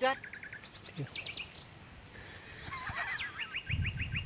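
Birds chirping: a quick run of short repeated high chirps, about ten a second, near the start and again near the end, with other sliding calls in between.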